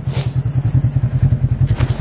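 Off-road side-by-side's engine idling with a steady, rapid low pulse; a light click near the start and another near the end.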